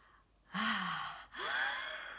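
A person's voice acting out a breath and a blow: a long, breathy, voiced "Aahhh" intake, then a forceful "Pfff" of blowing out birthday candles.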